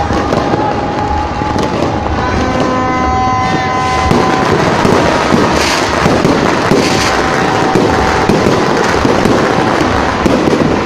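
Many firecrackers and fireworks crackling and popping all around at once, a dense unbroken racket. A horn-like tone sounds for about two seconds a couple of seconds in.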